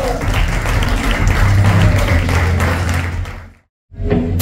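Audience applauding and cheering at a live rock show over a steady low hum from the stage, fading out to silence near the end.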